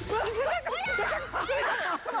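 Several people laughing at once, with overlapping high-pitched cackles and squeals.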